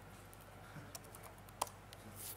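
Faint key clicks of a laptop keyboard being typed on, with one harder keystroke about one and a half seconds in.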